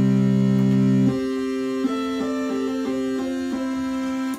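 Moog Grandmother analog synthesizer playing several held notes at once, each of its three oscillators sounding its own note. A low chord cuts off about a second in, leaving one held note while higher notes change over it.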